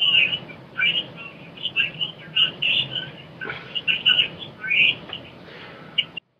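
Small birds chirping repeatedly in short high chirps, over a steady low hum.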